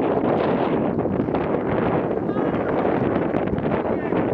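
Steady wind noise buffeting the microphone.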